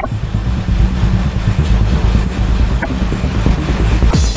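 Steady, low rumbling noise passage in a darkwave/futurepop electronic track, with the drum beat dropped out.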